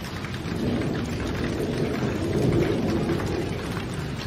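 Steady rain falling, with a low rumble of thunder that builds about half a second in, is loudest past the middle, then fades.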